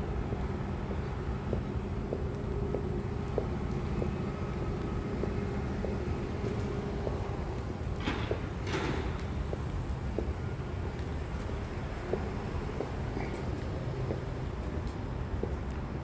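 Steady low outdoor rumble with a faint hum, from traffic or building machinery, with light footsteps of someone walking. A brief hiss swells and fades about eight seconds in.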